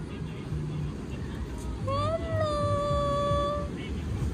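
A high-pitched voice makes one drawn-out squeal about two seconds in. It rises quickly and then holds a steady pitch for nearly two seconds. Beneath it runs a steady rush of wind and surf.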